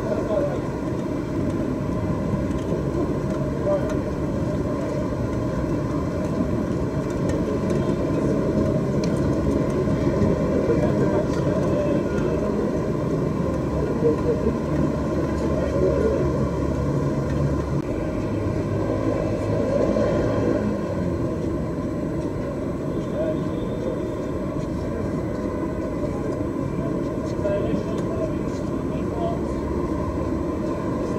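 Steady, muffled low rumble of courtside background noise with indistinct voices.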